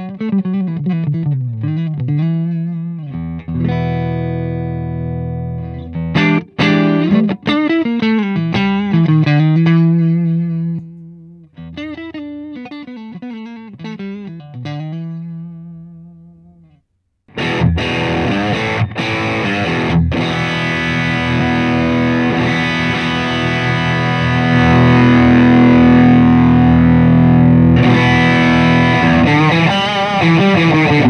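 Fender Telecaster played through a Hughes & Kettner Tubemeister Deluxe 20 tube amp with a Xotic EP Booster in its effects loop: clean single-note licks and chords for roughly the first 17 seconds. After a brief silence comes a louder, heavily distorted passage on the amp's dirty channel.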